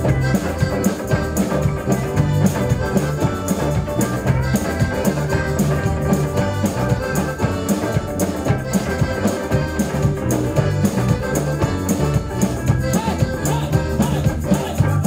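Live band playing an instrumental passage without vocals: drum kit, guitars and accordion over a steady, even beat.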